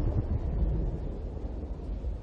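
Low, steady rumble of rolling thunder from a storm, easing slightly toward the end.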